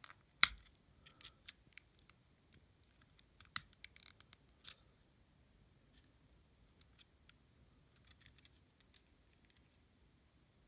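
Small plastic clicks and scratches from fingers working at the battery in an opened pink Digimon Digivice's battery compartment. There is a sharp click about half a second in, then a scatter of lighter ticks over the next few seconds, and only faint ones near the end.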